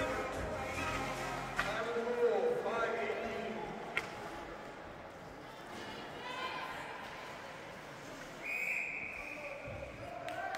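Ice hockey rink during play: voices in the stands, a couple of sharp clacks of stick or puck on the ice or boards, and a referee's whistle blown once for about a second near the end.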